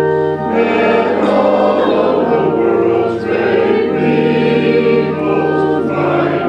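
A choir singing a hymn verse in harmony, holding long chords that change every second or two.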